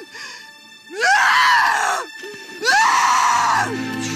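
A woman screaming in anguish twice, each cry about a second long and rising in pitch at its start. Low held music tones come in near the end.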